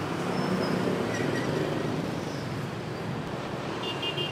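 Steady road traffic noise that swells slightly as a vehicle goes by in the first couple of seconds.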